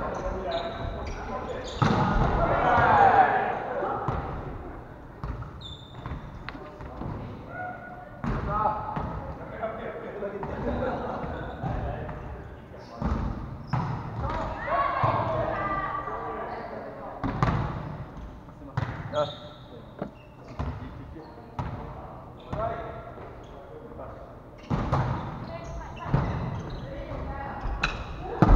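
Indoor volleyball rally: repeated sharp smacks of hands on the ball and the ball hitting the wooden floor, with players shouting to each other, echoing in a large gymnasium.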